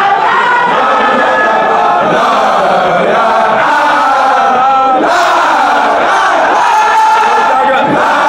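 A crowd of men chanting a zikr together, loud and continuous, with many voices overlapping in a sung, drawn-out chant.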